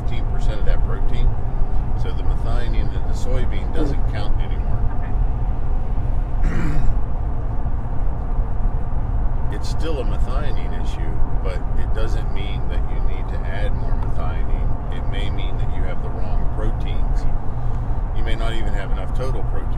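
A person talking over a steady low rumble that runs under the speech throughout.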